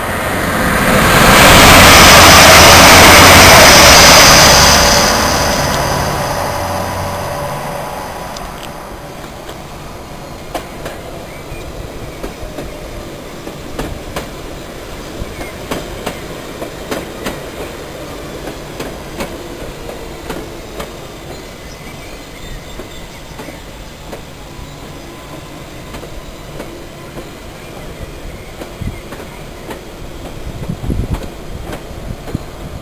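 A train passes close by at speed, loud for about four seconds and then fading away. After it, a London Underground Central line train rumbles slowly along the far platform, its wheels clicking irregularly over the rail joints.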